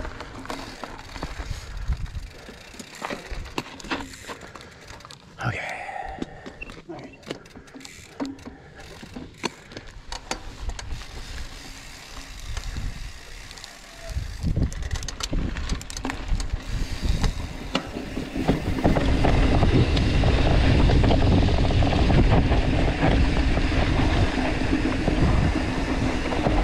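Mountain bike riding over a dirt trail: tyres crunching on dirt and gravel, with scattered clicks and rattles from the bike over rough ground. About halfway through it grows louder, and in the last third a steady wind rush on the microphone takes over as the bike picks up speed downhill.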